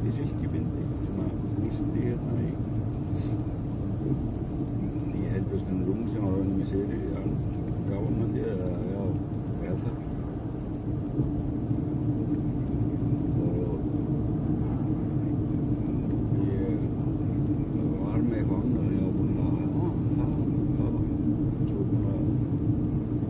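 Steady road and engine drone heard inside the cabin of a moving car, with a man's voice speaking at times over it.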